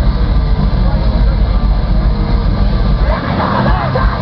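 Metalcore band playing loud live, with heavy distorted guitars, bass and drums. A shouted vocal comes in near the end.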